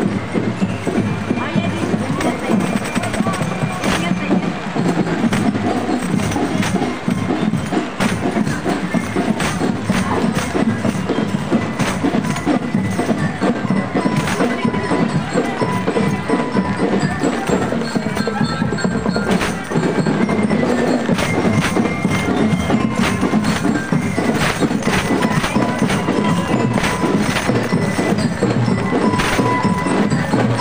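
Marching drum and bell-lyre band playing a parade tune: a steady drumbeat under a ringing, bell-like melody.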